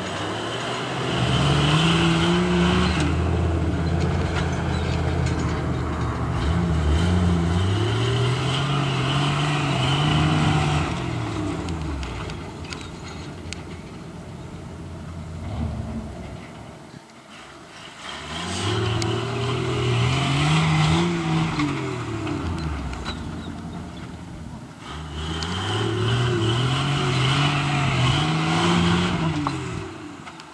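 Jeep YJ's engine revving hard under load on a steep climb, in four long surges whose pitch rises and falls, with quieter lulls between them.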